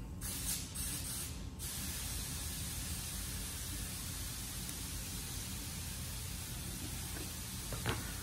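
Scissors cutting a thin PETG plastic sheet in one long cut, a steady hissing shear, with the sheet rustling in the first second or so. Just before the end the scissors are set down on the table with a single clack.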